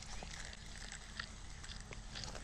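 Faint handling of a spinning rod and reel as a small hooked trout is wound in: a few soft, irregular clicks over a low steady hiss.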